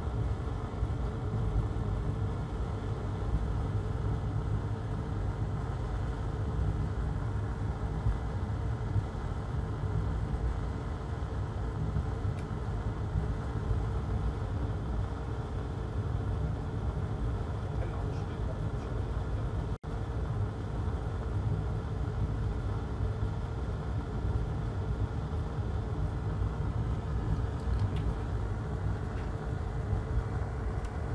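Steady low rumble and hum of background room noise, briefly cutting out about twenty seconds in.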